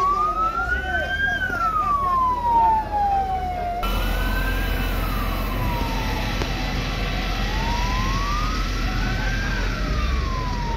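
Emergency vehicle siren wailing, its pitch rising and falling slowly, each sweep taking a couple of seconds, over a low rumble and voices. A little under four seconds in the background abruptly becomes noisier while the siren wail goes on.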